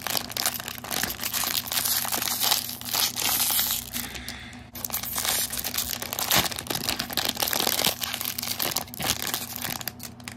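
Toy surprise packaging being crinkled and torn open by hand, a steady crackle with a brief lull about halfway through.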